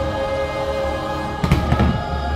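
Show soundtrack music from the park's loudspeakers holding a sustained chord, with a quick cluster of firework bangs about one and a half seconds in.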